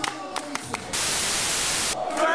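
A burst of static hiss, about a second long, that starts abruptly about halfway in and cuts off sharply just before the end, like an edit-transition effect. Before it come room noise with voices and a few sharp clicks.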